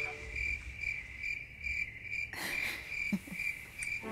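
Cricket-like chirping: a steady run of evenly spaced high-pitched pulses.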